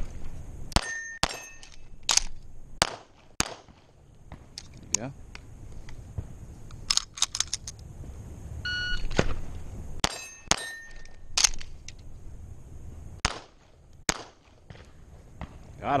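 A string of pistol shots from a stainless semi-automatic handgun in the first few seconds. About nine seconds in, a shot timer beeps and a second fast string of shots follows. A couple of the shots are followed by a short metallic ring, as of a steel target being hit.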